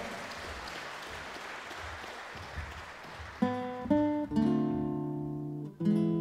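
Audience applause dying away. Then, just past halfway, an acoustic guitar starts a song's intro: a few single plucked notes, then ringing strummed chords.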